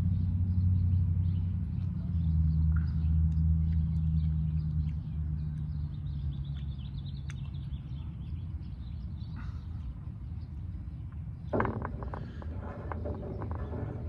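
Low engine hum of a motor vehicle on the road, strongest in the first half and fading away after about six seconds.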